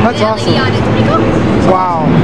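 A person talking in short bursts near the start and near the end, over a steady, loud background of event noise with a low hum.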